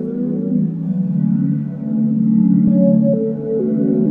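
Beat playback: mellow synthesizer chords held in a slow loop, with some notes sliding in pitch. The highs are dulled by a low-pass EQ filter that is being pulled down.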